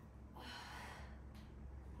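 A woman's faint breathing as she exerts herself in side plank hip raises: one breath out about half a second in, then a shorter, softer one.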